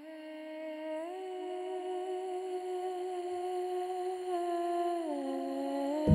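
Soundtrack music: a single held, wordless hummed tone that swells in, steps up in pitch about a second in, holds, then glides back down near the end.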